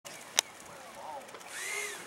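Electric ducted-fan motor of a radio-controlled MiG-29 jet whining at low throttle while taxiing, the pitch rising and then falling back near the end. A single sharp click comes in the first half-second.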